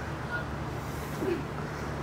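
Steady low mechanical hum in the background, even and unchanging, with no clear knocks or voices over it.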